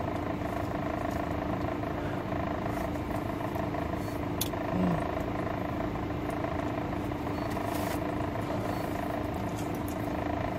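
Steady hum of a stationary car at idle, heard from inside the cabin. There is a faint click about four seconds in.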